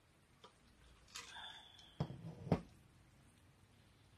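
A short slurp through a straw from a glass mug, then two sharp knocks about half a second apart as the glass mug is set down on a hard surface.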